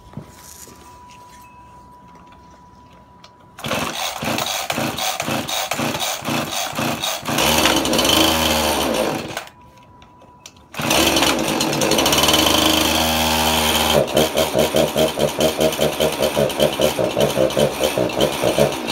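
A Husqvarna 346XP two-stroke chainsaw cold-started: it catches about three and a half seconds in, runs and revs up, then dies near the ten-second mark. Restarted a second later, it runs on with the throttle feathered in quick, even pulses, which it sometimes needs to get enough fuel to keep running.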